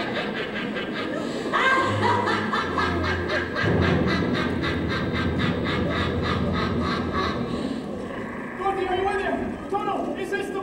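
A witch's amplified cackling laugh, a long run of rapid, evenly spaced pulses, with a low hum under it for a few seconds in the middle. Near the end the laughter gives way to a voice.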